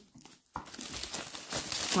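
Plastic shrink wrap crinkling as it is pulled by hand off a cardboard card box, starting about half a second in.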